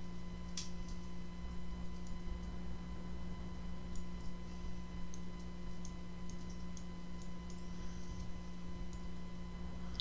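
Scattered short clicks of a computer mouse and keyboard being operated, the clearest about half a second in, over a steady electrical hum.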